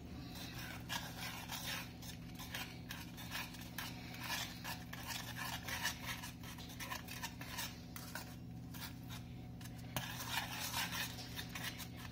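A utensil stirring and mashing milk-soaked Oreo biscuits in a metal pot, with repeated, irregular scrapes and knocks against the pot's wall and bottom.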